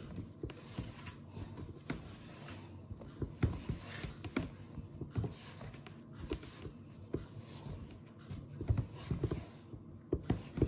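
Pandesal bread dough being kneaded by hand on a floured wooden chopping board: soft, irregular thuds and rubbing as the dough is folded and pushed against the board.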